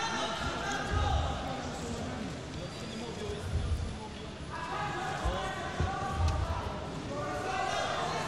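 Men's voices calling out in a large hall over a noisy background during MMA ground grappling, with a few dull low thumps.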